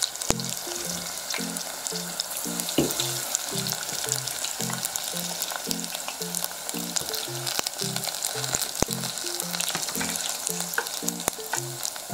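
Battered garlic sprouts deep-frying in hot tempura oil: a steady sizzle with many small crackles and pops as chopsticks turn the pieces. The oil is running hot.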